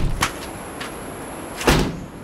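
Car door opened from inside with a click of the latch, then slammed shut near the end with a loud bang.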